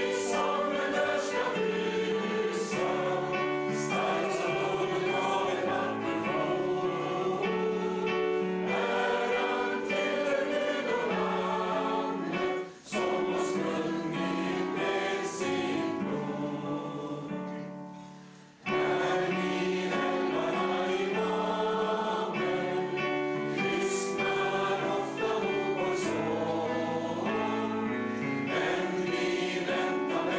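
A congregation singing a hymn together. The singing breaks off briefly about 13 seconds in. It fades away again just before 19 seconds, then starts up again.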